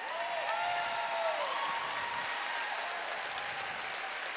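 An audience applauding steadily, with a few voices cheering in the first second and a half.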